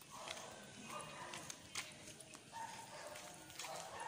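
Faint footsteps on a concrete street, a few soft irregular taps over quiet outdoor background noise.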